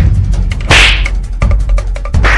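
Backing music with a fast, steady drum beat and heavy bass, with a loud whip-like swish about a second in.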